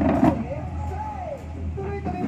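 Indistinct voices around a dinner table over a steady low hum, with a short clatter at the start.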